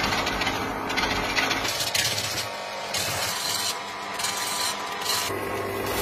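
Turning chisel scraping into a wooden log spinning on a lathe, a steady rasping scrape as the dhol shell is shaped. In the second half the rasping surges in short pulses about twice a second, over a low steady hum.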